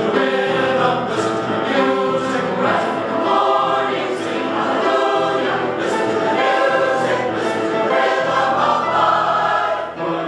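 Mixed choir of women and men singing a choral piece with words.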